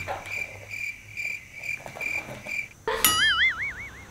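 Chirping-crickets comedy sound effect, the 'awkward silence' cue, at about three to four chirps a second. About three seconds in it gives way to a wobbling, warbling whistle-like sound effect.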